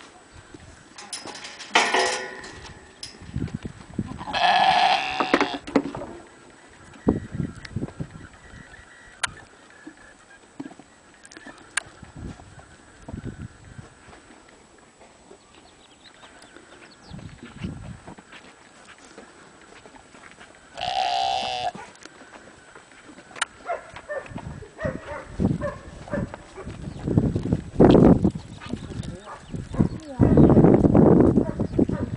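Sheep bleating: two long bleats, one about four seconds in and another about twenty-one seconds in, with scattered knocks and rustles between them.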